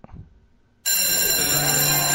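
Near silence for under a second, then a bell starts ringing suddenly and loudly, a steady bright ring.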